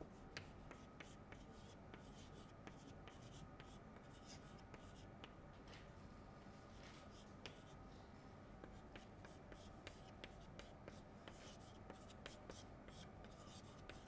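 Chalk writing on a chalkboard: faint, irregular quick taps and scratches as each stroke is made.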